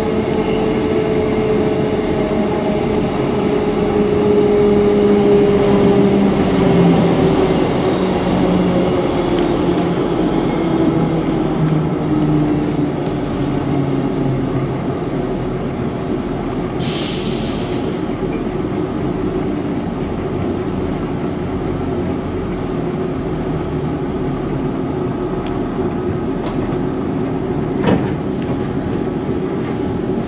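Class 158 diesel multiple unit heard from inside the carriage as it slows for a station stop: a steady rumble with a whine that falls in pitch over the first dozen or so seconds as the train decelerates. A short hiss comes about halfway through and a single click near the end.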